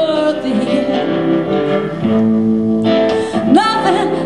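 Live blues-rock band playing, with a woman singing, amplified through the PA. A sung phrase rises near the end.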